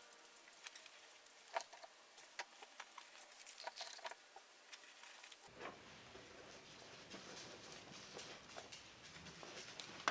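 Faint, scattered soft ticks and rustles of paste-soaked newspaper strips being laid and smoothed onto a balloon by hand, over near silence.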